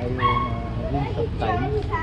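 A man's voice talking over a steady low background rumble.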